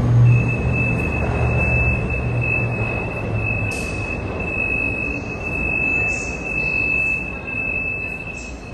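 Subway train wheels squealing on the rails: one steady high-pitched squeal held for about eight seconds over the train's rumble, which dies away about four seconds in.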